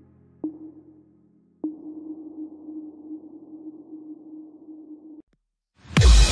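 Ambient background music: soft, sonar-like synth notes, each struck and left to ring, renewed twice early on. The track cuts off abruptly about a second before the end, and a much louder track begins right at the end.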